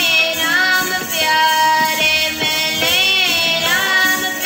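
A young voice singing Sikh keertan, sliding between long held notes, over instrumental accompaniment with regular drum strokes.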